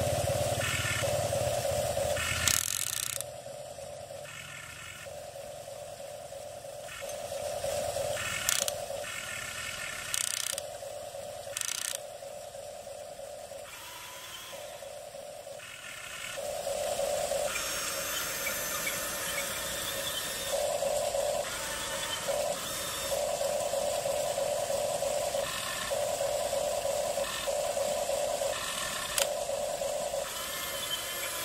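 Electric gear motors of a Huina radio-controlled toy excavator whirring in short on-off bursts of a second or two as the boom, arm and bucket are worked, with a few sharp clicks in between.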